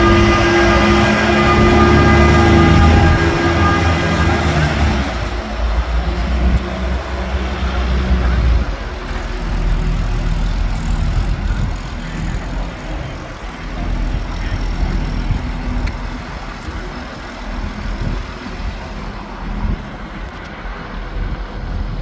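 A large marina boat forklift's engine running while it carries a boat on its forks. It is loud with a steady whine for the first five seconds or so, then settles to a lower, steadier engine sound.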